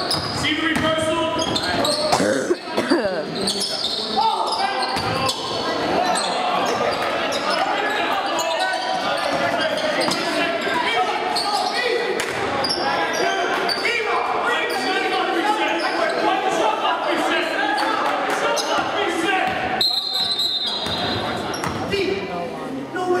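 Basketball dribbled on a hardwood gym floor amid continuous chatter and shouts from the crowd and players. Near the end a referee's whistle blows briefly, stopping play.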